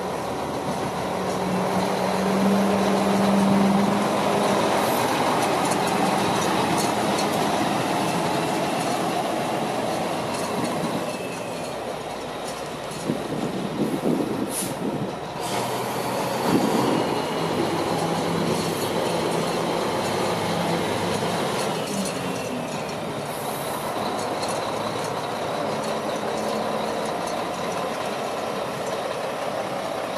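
A 1995 Mack CH612 dump truck's Mack EM7 diesel engine running as the truck drives slowly, with a steady low engine note. A few louder knocks and rattles come about halfway through.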